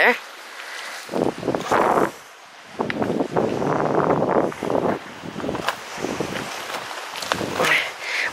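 Footsteps crunching and scraping over loose beach pebbles in an irregular, uneven gait, with stones clicking underfoot.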